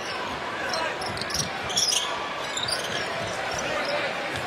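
A basketball being dribbled on a hardwood arena court during live play, over a steady crowd murmur.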